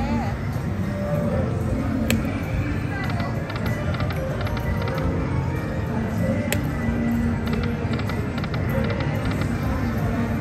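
Dragon Link 'Happy & Prosperous' video slot machine playing two spins: each begins with a sharp click, followed by a run of rapid clicks as the reels play out. Underneath is a steady casino din of background music and chatter.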